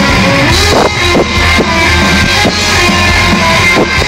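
Live rock band playing loud: electric guitars over a drum kit, with drum strikes cutting through a dense, steady wall of sound.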